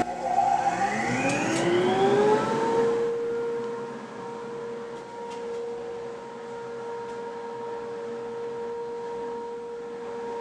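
Rockler Dust Right 650 CFM wall-mount dust collector switched on: its motor and impeller spin up with a whine rising in pitch over about three seconds, then run steadily at full speed with a constant hum.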